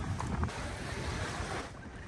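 Wind blowing across the microphone in low, uneven gusts, over gentle waves washing on a sandy beach.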